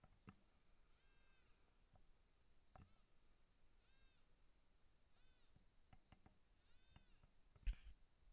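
Faint, high whining yips of a canine kind, about five of them roughly a second apart, each rising and then falling in pitch. A short knock comes near the end.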